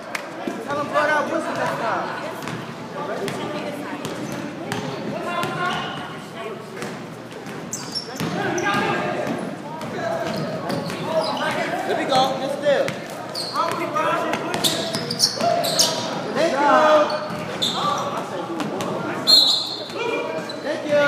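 Basketball game in a gym: a basketball bouncing on the hardwood court, with short high sneaker squeaks and indistinct shouting and chatter from players and onlookers, all echoing in the large hall.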